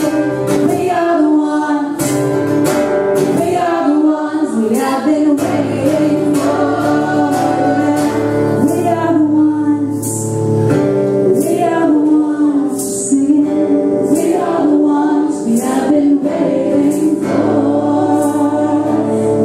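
Two women singing a duet in harmony over a strummed acoustic guitar, performed live.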